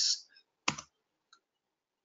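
A single computer keyboard keystroke about two thirds of a second in, followed by a faint tick: the Enter key pressed to run a terminal command.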